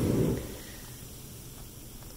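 The jets of a 110-volt plug-and-play hot tub switch off from high: the low rush of the jet pump and churning water dies away about half a second in, leaving a faint steady background.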